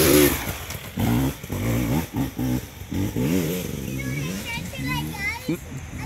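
Dirt bike passing close, then riding off, its engine revving up and down in repeated swells. It is loudest as it goes by at the start. High-pitched shouting joins in during the second half.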